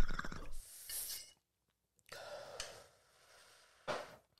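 A person breathing out after a hit of cannabis smoke: two soft breaths, about a second in and again about two seconds in, with a short sharp sound just before the end.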